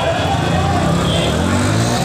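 A motor vehicle's engine running close by, a low steady drone over a loud street din with voices.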